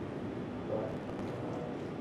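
Steady background room noise picked up by a lecture microphone, with no speech.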